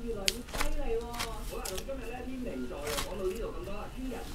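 People talking quietly, with soft rustling and pressing sounds of hands kneading a large ball of dough on a floured metal baking tray.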